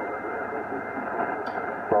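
Shortwave receiver audio on the 40-meter band in lower sideband between stations: a steady hiss of band noise with a steady high-pitched tone running through it, and faint, jumbled voices of weaker signals underneath. A brief click comes about one and a half seconds in.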